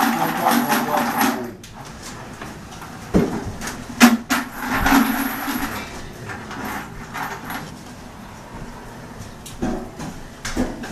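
Indistinct voices of a small group in a room, with a few sharp knocks, the loudest just after four seconds in.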